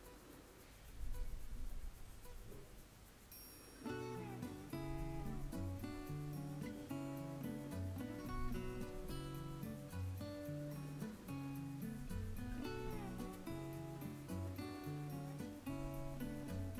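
Quiet background music with a plucked-string melody, starting about four seconds in. Before it there is only a faint low rumble.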